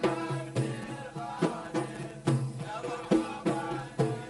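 Kuwaiti folk song: men's voices singing over large frame drums (tar) and a small double-headed hand drum (mirwas), struck in a steady beat of about two strokes a second.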